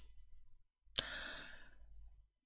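A man's breath into a close handheld microphone: a short click about a second in, then a sigh-like exhale that fades out over about half a second, with otherwise near-quiet room tone.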